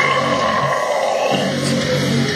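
Heavy deathcore backing track with thick distorted guitars and bass, sustained and unbroken.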